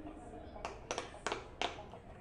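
Buttons of a battery-powered, light-up frog-shaped push-bubble game toy being pressed: about five short, sharp clicks at irregular intervals.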